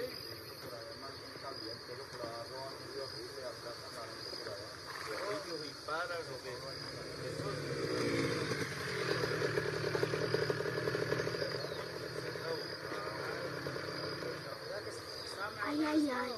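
A small engine's buzz swells over several seconds in the middle and fades away, over a steady high insect drone and a few faint voices.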